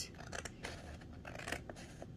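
Scissors cutting printed paper, a few quiet snips as the white margin is trimmed off a sublimation transfer sheet.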